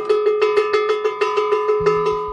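A hanging iron bell struck rapidly with a stick, about eight strikes a second, in an even run of metallic clangs. It is rung to signal that the shower hour is over and to call the women together.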